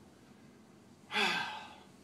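A man's audible breathy sigh about a second in, voiced and falling in pitch as it fades over most of a second, after a quiet stretch of room tone.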